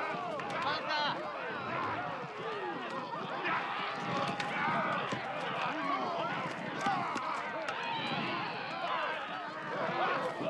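A crowd of men yelling and shouting at once, with the sound of many running feet.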